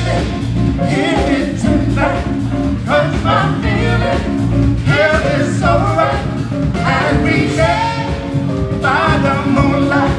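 Live soul band performing: a woman and a man singing into microphones over keyboards, electric bass and drum kit.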